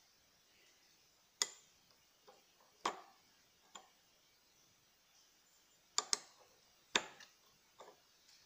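About seven sharp clicks and knocks at irregular intervals, two close together about six seconds in: hard metal and plastic parts of an Electrolux LTE 12 washing machine's transmission being handled, as the large plastic drive pulley is picked up to be fitted onto the transmission shaft.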